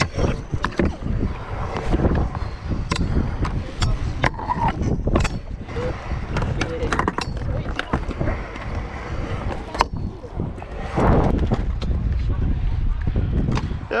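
Stunt scooter wheels rolling over concrete, a continuous rumble broken by many sharp clacks and knocks from landings and the scooter's deck and bars. The rumble grows louder for a second or so about eleven seconds in.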